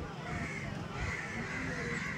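Crows cawing, about three calls in a row, over a steady low outdoor rumble.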